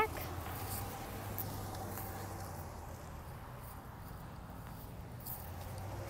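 Quiet outdoor ambience with a faint, steady low hum and no distinct events.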